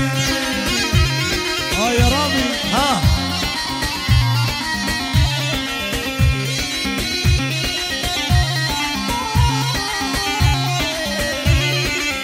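Amplified dabke music: a mijwiz reed pipe playing a dense, continuous melody over a steady heavy drum beat that lands about once a second.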